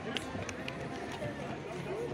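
Footsteps on wooden boardwalk planks, a few light knocks, over the faint murmur of people's voices some way off.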